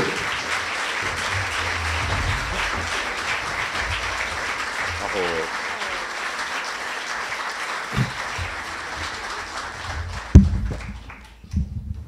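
Audience applauding steadily for about ten seconds, then dying away near the end.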